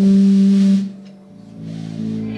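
Live jazz played on electric bass guitar and electric guitar: one note is held for under a second, the sound then drops away, and a lower note comes in near the end.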